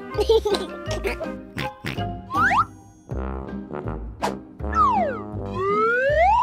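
Playful children's background music with comic sliding pitch effects: one rising glide about two seconds in, then a falling glide and a rising one near the end.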